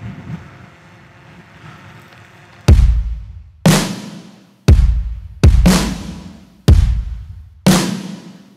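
Background music: a soft, faint opening, then heavy drum hits come in about a third of the way through, landing roughly once a second.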